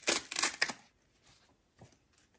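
Pieces of dry tree bark rustling and scraping as they are handled and laid over moss, a crackly burst in the first second, then quiet apart from one small tick near the end.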